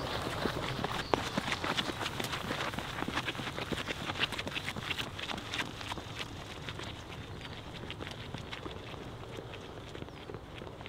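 Running footsteps of several people on a sandy dirt trail, a quick irregular patter of footfalls that grows fainter as the runners move off up the hill.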